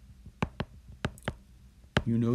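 A stylus tip tapping and writing on a tablet's glass screen: about five sharp clicks in two seconds, over a faint steady hum.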